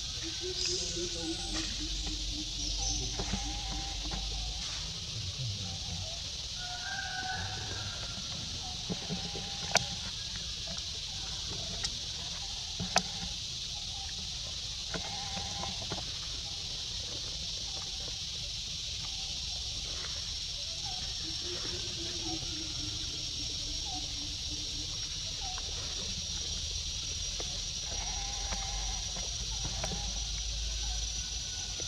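Outdoor ambience dominated by a steady high-pitched insect drone, with faint short animal calls, two drawn-out low tones and a few sharp clicks about a third of the way in.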